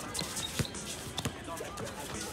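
A basketball bouncing on a hard outdoor court: one sharp bounce about half a second in, then two more in quick succession a second in. Players' voices are heard alongside.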